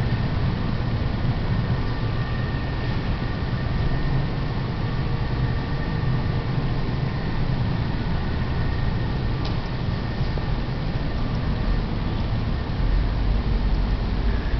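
Steady low rumbling background noise with no clear events.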